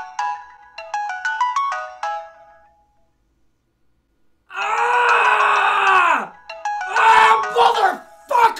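Mobile phone alarm playing a short chime melody of stepping notes, twice over, then stopping. After a pause of about two seconds a man gives a long drawn-out groan that drops in pitch at the end. The alarm melody starts again under a second groan near the end.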